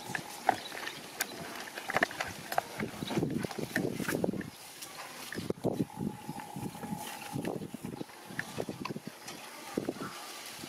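Wet squelching and sloshing as gloved hands knead and toss chicken feet in a thick spiced marinade in a bowl, in irregular short squishes.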